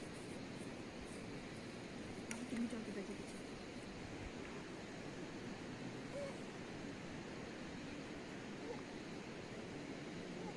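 Steady outdoor background noise with faint, brief voices, one a little louder about two and a half seconds in and another around six seconds in.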